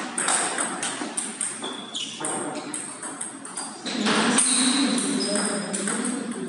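Table tennis rally: a series of sharp clicks as the ball strikes rackets and the table, some with a short ringing ping. A voice is heard in the background from about four seconds in.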